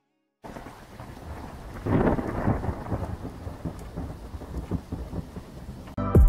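Rain falling steadily, starting suddenly about half a second in, with a low rumble of thunder swelling about two seconds in.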